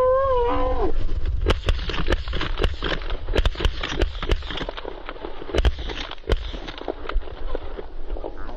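Several hunters firing shotguns in a rapid, ragged volley, many shots close together from about a second and a half in, thinning out after four seconds, with wind rumbling on the microphone. The volley is preceded by a long held call.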